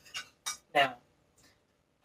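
A kitchen utensil clinking against a steel cooking pot, two short clinks in quick succession.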